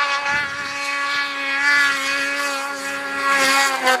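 Snowmobile engine held at steady high revs, one even, unbroken engine note.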